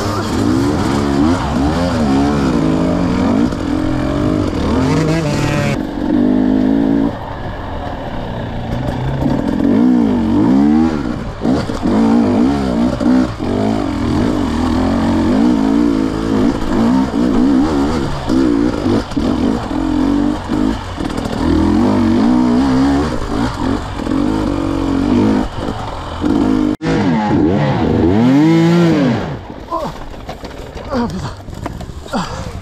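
KTM 250 EXC two-stroke dirt-bike engine revving up and down without pause as the throttle is worked on a rough, steep trail climb, its pitch rising and falling every second or so. There is a brief break in the sound near the end, followed by one long rev that rises and falls.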